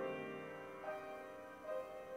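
Slow, quiet piano music: single sustained notes struck about once every second, each fading away before the next.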